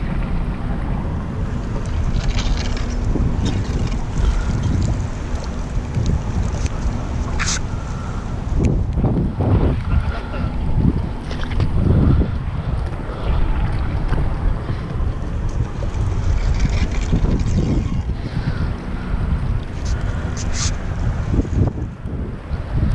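Wind buffeting the microphone in a steady low rumble, with water sloshing and splashing as a hand net is swept through the harbour water along a concrete quay wall.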